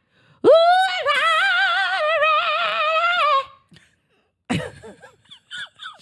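A woman belting one long, high sung note with heavy vibrato, scooping up into it at the start and holding it for about three seconds in a playful, over-the-top diva style; a little laughter follows near the end.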